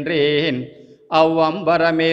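A male voice chanting a Tamil devotional verse in long, steadily held notes, with a brief breath pause about halfway through.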